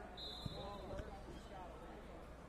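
Two dull thumps about half a second apart, over faint voices and chatter in the background, with a brief high steady tone sounding between them.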